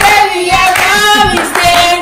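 A group of people singing together and clapping along.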